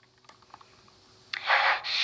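A few faint clicks in near silence, then about a second and a half in a short breathy hiss: a breath through a handheld megaphone held at the mouth.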